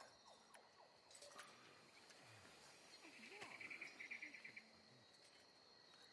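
Near-silent forest ambience with a faint insect trill: a rapid, even run of high chirps lasting about a second and a half near the middle.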